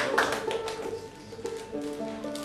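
Audience applause tailing off in a few last claps while a fiddle sounds long, steady bowed notes, with a lower note coming in near the end.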